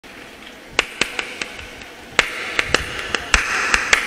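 Sharp hand claps from a group of Oppana dancers: a quick group of about four claps around the one-second mark, then a faster, uneven run of claps from about halfway through.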